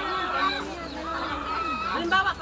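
Domestic chickens calling close by, with people's voices chatting underneath.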